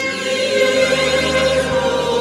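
Church choir singing with many voices in sustained chords over a steady low accompanying note.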